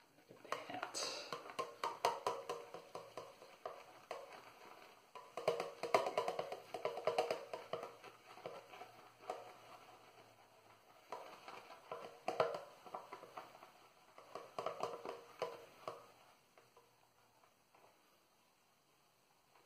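Shaving brush being swirled and scrubbed on a puck of shaving soap to load it: a rapid scratchy clatter that comes in four spells of a few seconds each, with short pauses between.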